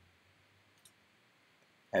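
A single faint computer mouse click about a second in, over quiet room tone; a man's voice starts right at the end.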